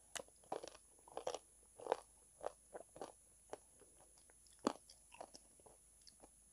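Close-miked crunching and chewing of a hard, crunchy piece coated in soft brown paste, in irregular sharp bites with the loudest crunches about two seconds in and just before five seconds.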